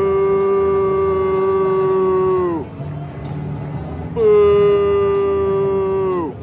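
Two long blasts of a deep horn through the stadium, each one held note that sags in pitch as it dies away. The first ends a couple of seconds in, and the second starts about four seconds in.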